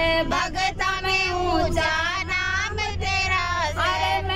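A woman singing a Haryanvi devotional bhajan to Balaji into a handheld microphone, in long held notes with ornamented, wavering pitch. A steady low hum runs underneath.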